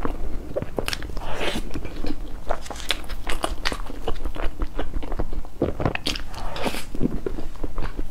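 Close-miked eating sounds: biting and chewing a fondant-covered cake, with many short crunching sounds in quick succession.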